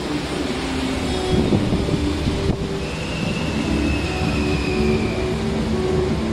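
Buenos Aires Subte train approaching along the tunnel into the station, a steady rumble slowly building. A thin, high steady squeal from the train sounds about three seconds in and lasts about two seconds.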